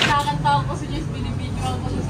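Indistinct voices of people talking, over a low steady hum.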